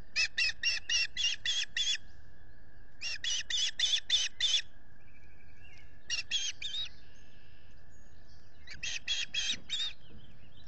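Osprey calling in four bouts of rapid, high chirped whistles, several notes each, about a second to two seconds per bout with short pauses between them.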